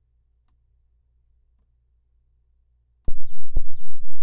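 An 808 bass drum sample in Maschine's sampler, played at the very bottom of the keyboard (C-2). Pitched that low it becomes a weird, loud, pulsing wobble of about four pulses a second, starting suddenly about three seconds in after near silence.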